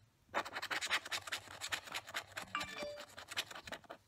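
Rapid scratching at the scratch-off coating of a lottery scratch card, many quick strokes in a run of about three and a half seconds.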